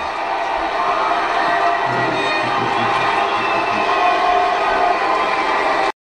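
Arena crowd cheering and clapping with music playing over it, swelling slightly, then cutting off suddenly at the very end.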